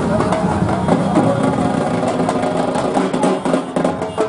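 Street procession din: many voices and drums and music together, with an engine running underneath.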